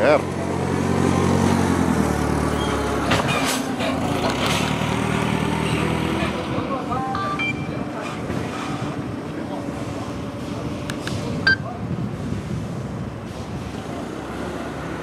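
Caterpillar propane forklift engine running close by. Its low, steady note is strongest over the first few seconds, with a single knock about three seconds in, then fades as the forklift moves away.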